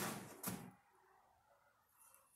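A short, faint knock about half a second in, from handling on a table, then near silence: quiet room tone.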